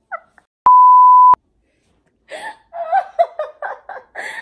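A censor bleep: one steady electronic tone, under a second long, that starts and stops abruptly just after the start. A woman laughs from about halfway through.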